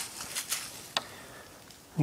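A few short, light clicks over faint rustling, about half a second and one second in.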